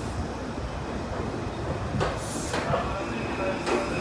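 Meitetsu 2200 series electric train rolling slowly alongside the platform: a steady low rumble with a few sharp wheel clicks, and a short hiss of air about two seconds in.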